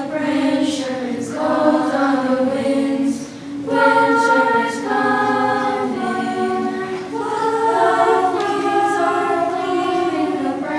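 Middle-school chorus of young voices singing in parts on held notes, with a short dip in loudness about three seconds in before the singing swells again.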